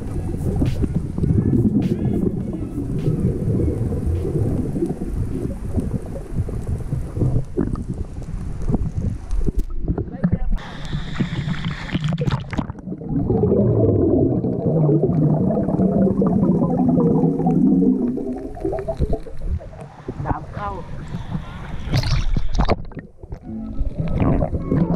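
Muffled underwater sound of a swimmer moving through the water, picked up by a GoPro held at arm's length. About ten seconds in, the camera breaks the surface and there is a short burst of splashing before it goes back under.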